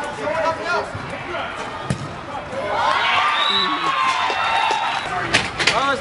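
Players shouting on a small-sided soccer pitch, with one drawn-out call through the middle, and a few sharp knocks of the ball being struck, loudest near the end.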